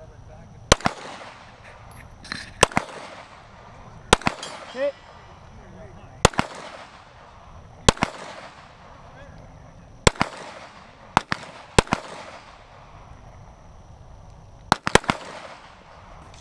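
Gunshots fired one at a time at a slow, deliberate pace, about ten in all, spaced one to two seconds apart with a quick pair near the end, each followed by a rolling echo.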